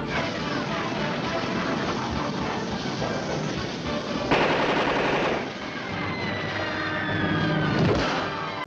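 Cartoon sound effects of rapid machine-gun-like fire over an orchestral score. A louder noisy burst comes about four seconds in, and falling whistle tones follow in the second half.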